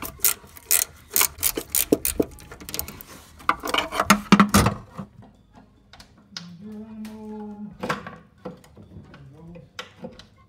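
A ratcheting box wrench clicking rapidly and unevenly as it turns a 13 mm master cylinder mounting bolt. The clicking stops about halfway through.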